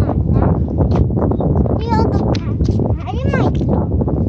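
Gulls giving mewing, cat-like calls that rise and fall in pitch, one about two seconds in and another about three seconds in, over a steady rumble of wind on the microphone.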